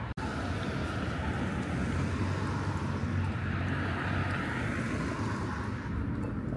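Steady low rumble of motor-vehicle traffic, swelling in the middle and easing off toward the end. The sound cuts out for an instant just after the start.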